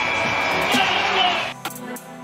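Basketball arena crowd noise with music over the PA, and a long steady high tone from the game-ending horn as the clock runs out. About one and a half seconds in, it cuts to quieter outro music with sharp percussive hits.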